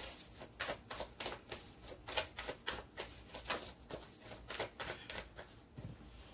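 Tarot cards being shuffled by hand: a continuous run of quick, crisp flicks, several a second.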